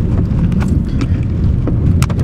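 Steady low rumble inside a car's cabin as it drives over a rough, rocky dirt road, with a few light knocks from the wheels over stones.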